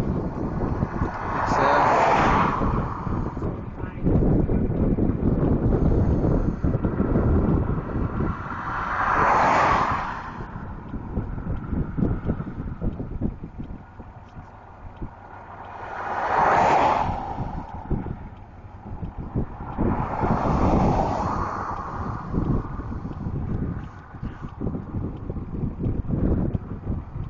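Wind buffeting the microphone with a steady low rumble, while vehicles pass on the highway four times, each one swelling up and fading away over about two seconds.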